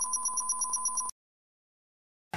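An electronic ring like a telephone's, a steady high trill pulsing about twelve times a second, that cuts off abruptly about a second in.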